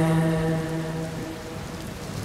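The song's last held note fades out over the first second, leaving a steady hiss of rain.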